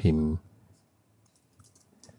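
A few faint keystrokes on a computer keyboard, light clicks as a short word is typed.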